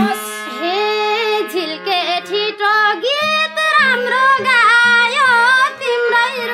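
Nepali lok dohori singing: a woman's solo voice in a high register, with bending, ornamented phrases, over a steady held drone note.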